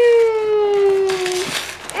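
A child's voice holding one long drawn-out note that slides slowly down in pitch and breaks off about one and a half seconds in.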